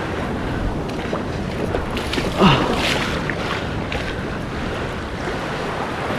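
Small waves washing onto a sandy beach, with wind on the microphone. A man's brief falling exclamation cuts in about two and a half seconds in.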